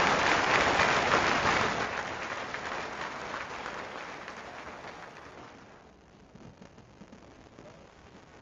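Audience applauding in a large hall, heard through a live camera feed's microphone; the clapping fades away over about six seconds until only a faint hiss is left.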